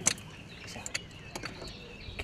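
A few scattered sharp clicks and light knocks, the loudest right at the start, from a float-fishing rod and reel being taken up and handled in a small boat as a bite comes.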